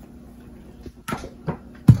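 A few light clicks and taps from spice containers being handled, then one louder, sharp knock near the end as a container is set down on the counter.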